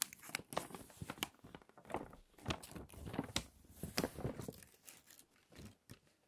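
Loose glossy magazine pages being handled and turned over, the paper crinkling and rustling in a string of irregular crackles that thin out near the end.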